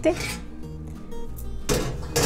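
Soft background music with steady tones. Near the end comes a sudden noisy scrape as a perforated stainless steel range hood filter is handled against the sink.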